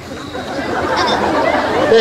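Several voices talking over one another in a murmur that grows steadily louder.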